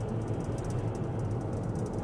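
Steady road and engine noise inside the cabin of a moving car, a low, even rumble.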